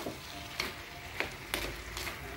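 Diced mango frying gently in oil in a heavy black pot, with a soft sizzle, while a metal spoon stirs it. The spoon clicks sharply against the pot three times, at about half a second, one second and one and a half seconds in.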